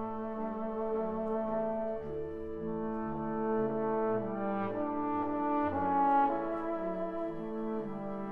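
Concert wind band playing: brass holding sustained chords over a bass line that moves note by note, swelling louder about six seconds in.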